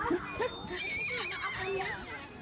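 A young child's high-pitched, wavering squeal, strongest from about a second in, mixed with voices.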